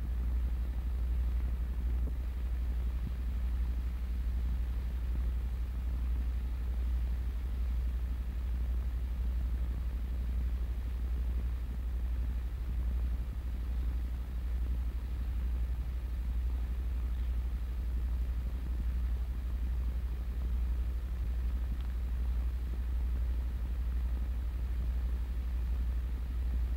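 Steady low hum with faint hiss, unchanging throughout: the background noise of an old film soundtrack.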